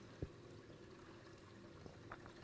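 Near silence: the faint steady trickle of a reef aquarium's water circulation, with one short faint click about a quarter of a second in.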